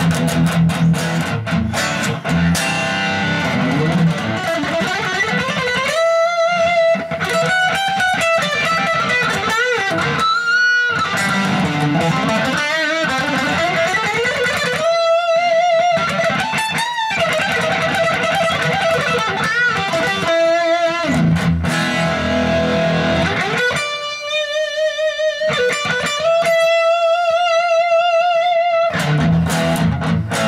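Ibanez Iceman ICHRG2 electric guitar with humbucking pickups, played through a Marshall amplifier with a little gain for a classic rock tone. It plays a lead line of string bends and long notes held with wide vibrato, with lower chords at the start and again about two-thirds through.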